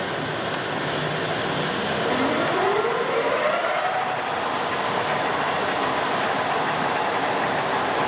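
LeBlond heavy-duty engine lathe running with its spindle and large four-jaw chuck turning at top speed, 625 RPM: a steady even running noise from the geared headstock, with a faint whine that rises in pitch about two seconds in. The machine runs smoothly and sounds sound.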